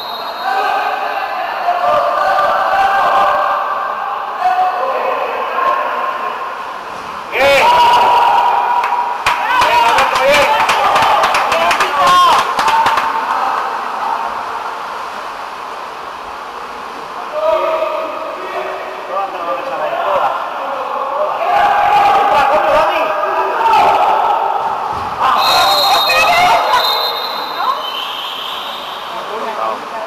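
Spectators shouting and talking in an echoing indoor pool hall during a water polo match, loudest from about eight to thirteen seconds in, with many sharp claps and slaps among the shouts. A short high whistle blast sounds a few seconds before the end, typical of a referee's whistle.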